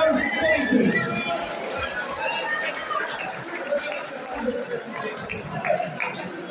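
Indistinct voices chattering, with one voice standing out just after the start, then a mixed murmur of several people.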